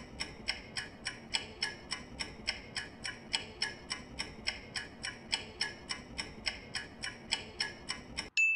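Clock-style ticking of a quiz countdown-timer sound effect, steady at about four ticks a second, marking the time left to answer.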